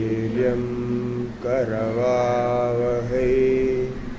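A man chanting a mantra in long held notes, with short pitch bends between three sustained phrases.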